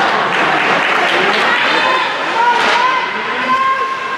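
Indistinct shouting and chatter from spectators and players in an ice hockey rink during play, over the noise of skates on the ice, with a few sharp clacks of sticks and puck.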